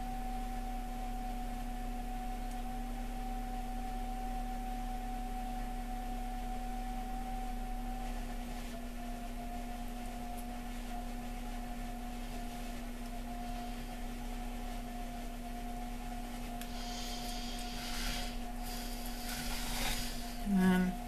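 Electric pottery wheel motor running with a steady hum and a higher whine, its pitch shifting slightly about halfway through, while a mug's wall is pulled up on the spinning wheel. A brief hiss near the end.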